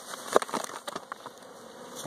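Honeybees buzzing around an open hive, with a few sharp crackles and rustles about half a second in as granulated sugar is poured from a plastic bag onto newspaper over the frames.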